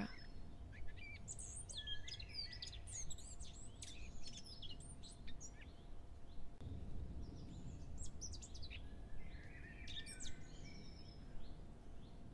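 Birds chirping and trilling in two spells, about a second in and again past the middle, with a faint steady hum underneath.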